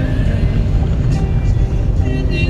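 A moving car's steady low road and engine rumble, with music playing faintly over it.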